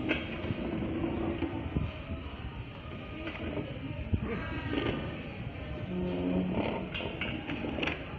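Busy restaurant dining-room din: a mix of voices with several sharp knocks, as of chairs and tables being handled.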